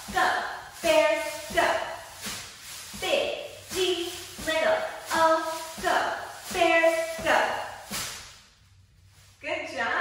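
A woman chanting a cheer on a steady beat, one stressed syllable after another, with pom-poms rustling as they are shaken. The chant stops about eight and a half seconds in, and a short bit of speech follows just before the end.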